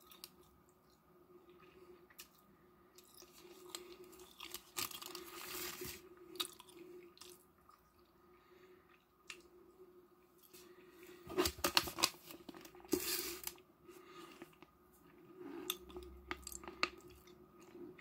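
Someone eating up close, chewing, with intermittent rustling, tearing and crinkling of plastic wrapping and a few sharp clicks, loudest about two-thirds of the way in, over a faint steady hum.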